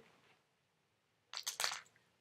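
Quiet room, then a quick cluster of small clicks and rattles about a second and a half in: plastic pill bottles being handled and set down on a table.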